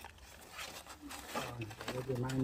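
Aluminium foil crinkling faintly as it is handled and pulled open. A low, drawn-out voice sound, like a hum or a held vowel, starts about halfway through and becomes the loudest thing.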